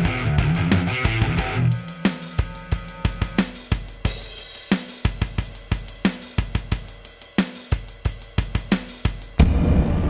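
A Stratocaster-copy electric guitar played through a Zoom G5n over a backing track stops a couple of seconds in, leaving a drum beat of kick, snare and hi-hat playing on its own. Near the end a loud sound cuts in suddenly.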